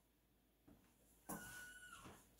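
Near silence: room tone. Near the end comes a faint, short sound with a thin, steady whistle-like tone.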